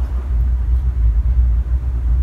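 Steady low rumble with no speech or other distinct sound over it.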